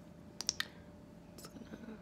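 Small sharp plastic clicks from a ColourPop lip gloss tube being opened and its applicator wand drawn out: three quick clicks about half a second in, then another about a second later.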